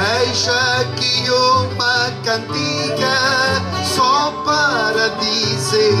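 Acoustic guitar and other plucked string instruments playing the instrumental opening of a Portuguese desgarrada, a melody wavering above a steady bass line.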